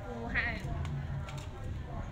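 A goat bleating once, a short wavering call that falls in pitch.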